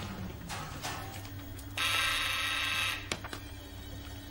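An electric bell ringing once, for about a second, starting about halfway through, over a low steady hum.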